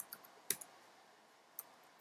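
A few faint, separate computer keyboard keystrokes, with irregular gaps; the loudest is about half a second in.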